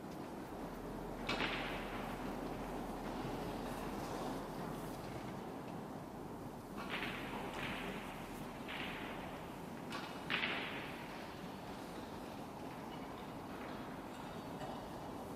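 Quiet arena ambience in a hushed snooker hall, with a handful of short scuffs and rustles, one about a second in and several between about seven and eleven seconds in.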